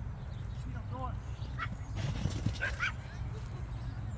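A small dog giving a few short, high yips as it runs an agility course with its handler, over a steady low rumble.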